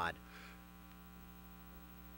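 Steady electrical mains hum, a low buzz made of many even overtones, carried by the sound system or recording, just after a spoken word ends at the very start.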